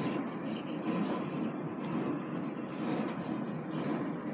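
Steady low background noise, an even hum-like rush with no distinct knocks or tones.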